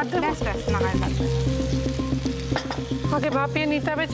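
Starfruit slices sizzling in hot oil in a frying pan as water is poured in from a jug and a spatula stirs them, under background music with a singing voice.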